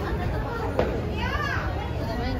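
Children playing and calling out, with a high, rising-and-falling child's shout past the middle. A single sharp click comes just before it.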